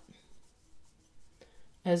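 Near silence: room tone with a few faint, soft rubbing noises, then a woman's voice starts near the end.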